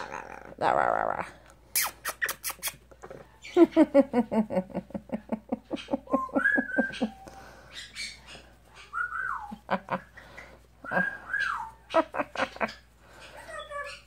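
A yellow-naped Amazon parrot calling while it plays: a rough burst, a quick run of clicks, a long rapid stuttering call that falls in pitch, then several short whistles that rise and fall.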